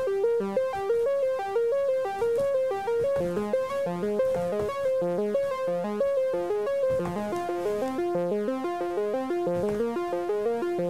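A sawtooth-synth arpeggio generated in Pure Data: a four-note pattern loops quickly at about six short notes a second, each note filtered and shaped by a short attack-release envelope. The notes of the loop change about seven seconds in as new pitches are fed into the pattern.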